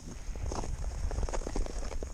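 Ice skates scraping and crunching over snow-crusted lake ice in a run of irregular short strokes, with wind rumbling on the microphone. The snow lying on the ice makes the skating rough.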